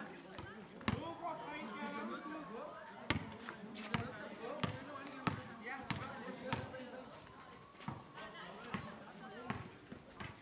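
A basketball bouncing on a paved outdoor court: one bounce about a second in, then a steady dribble of roughly one and a half bounces a second from about three seconds in, with a few more bounces near the end. Players' voices and shouts carry on around it.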